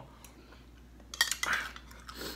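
A metal spoon clinking against a ceramic bowl: a few light, ringing clinks a little over a second in, with quiet before them.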